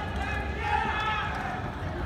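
Distant voices shouting across an open stadium, with a drawn-out call about halfway through, over a steady low rumble.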